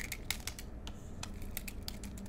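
Stylus tapping on a drawing tablet: a quick, irregular run of light clicks as dots are dabbed into a drawing.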